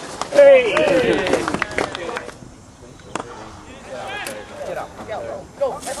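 Voices shouting and calling, loudest in the first two seconds, then fainter calls near the end, with a sharp click about three seconds in.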